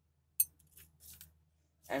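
Handling noise: one sharp click about half a second in, followed by about a second of faint scraping and rattling.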